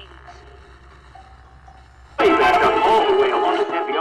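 Small wooden tabletop radio giving a low steady hum and faint voice, then suddenly blaring loud music with wavering sung tones about two seconds in.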